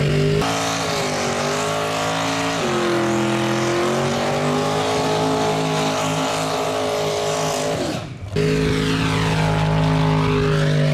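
Chevrolet S10 drag truck doing a burnout: the engine is held at steady high revs while the rear tyres spin. The sound drops out for a moment a little after 8 seconds.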